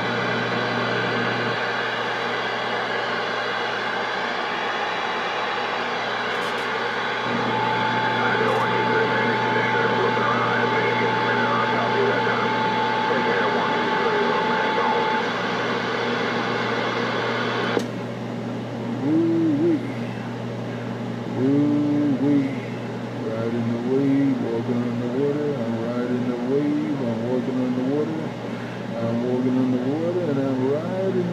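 Galaxy CB radio receiving: a dense hiss of static over a steady low hum, with a steady whistle tone for several seconds in the middle. A little over halfway through, the static drops away suddenly and faint, garbled voices come through the radio's speaker.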